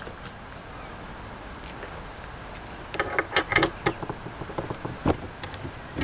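Padlock being unlocked and lifted off a metal recovery-board mount: a quick string of small metallic clicks and rattles from about three to five seconds in, after a stretch of faint background hiss.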